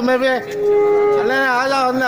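Loud, drawn-out shouted calls from a voice: one long call at the start and another in the second half, with a steady held tone between them.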